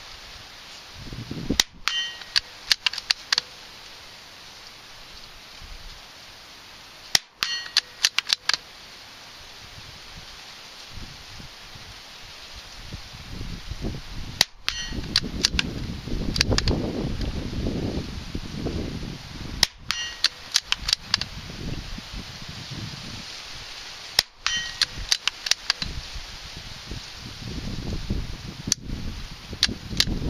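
A scoped bolt-action rifle fired from prone, six sharp shots about five seconds apart. Each shot is followed within a second by a quick string of fainter sharp pings with a faint ring.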